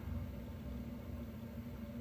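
A low steady hum with faint hiss, the background noise of the room in a pause between voices.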